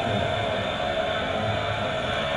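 Heavy metal band playing live at full volume: distorted electric guitars over bass and drums in a concert recording.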